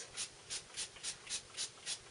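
Small fine-mist pump spray bottle spritzing ink through a stencil onto paper: a rapid run of about seven short hisses, three or four a second.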